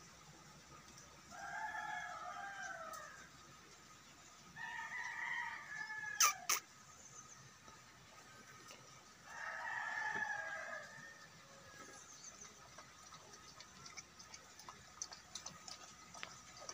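A rooster crowing three times, each crow lasting about a second and a half. Two sharp clicks come just after the second crow, with a few faint ticks near the end.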